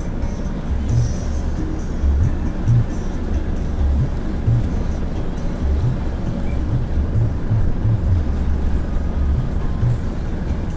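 Wind buffeting the microphone in irregular gusts over the steady noise of a small wooden fishing boat under way on the water.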